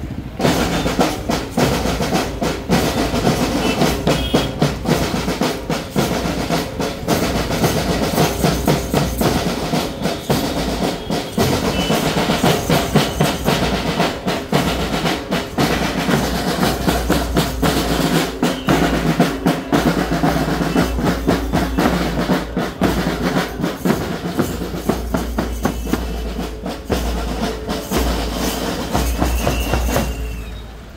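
Scout band's snare drums, bass drum and cymbals playing a fast, steady marching beat.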